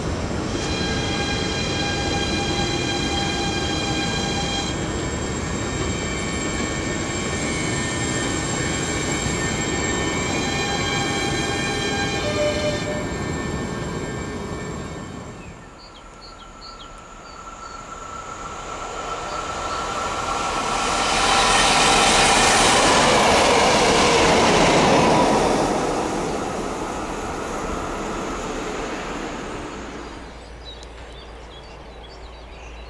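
SNCF Z 58500 RER NG double-deck electric train running at the platform, with a steady whine in several tones over its running noise that shifts a few times. After a cut, a convoy of SNCF diesel locomotives (BB 69200, BB 69400 and BB 67200) approaches, passes loudly in the second half, and fades.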